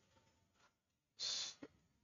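Near silence, then a little over a second in, a person's single short breath, like a brief sigh.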